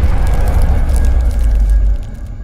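Logo-sting sound design: a loud, deep rumble with crackling sparks over it, dropping away right at the end.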